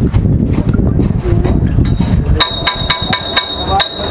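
Hammer blows ringing on metal: about six quick strikes a quarter second apart in the second half, over a low rumbling noise that fills the first half.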